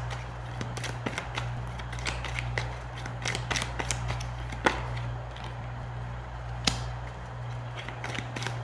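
A deck of tarot cards being shuffled by hand: a quick, irregular run of light flicks and taps as the cards slide and slap against each other, with two sharper snaps, one about halfway and one near the end.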